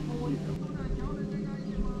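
Wind rumbling on the microphone, under a steady low hum.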